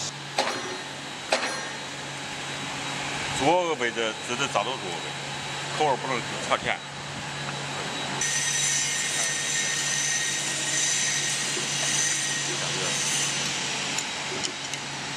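Factory workshop background: a steady low machine hum, a few light metal clicks and short snatches of voices, then from about 8 s in a steady hissing, whining machine noise like a vacuum cleaner or air blower.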